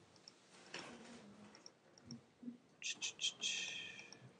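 A few quick computer mouse clicks about three seconds in, in a quiet room, followed by a soft hiss.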